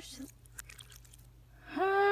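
A person's voice played backwards: garbled reversed syllables, then a quieter stretch of noise with a few faint clicks, then a loud, held vocal sound starting near the end.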